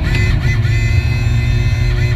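Rally car engine and road noise heard from inside the cabin, loud and continuous, with music mixed underneath.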